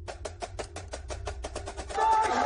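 Rapid percussion in a film score: a quick, evenly spaced run of drum hits, about seven a second, starting suddenly.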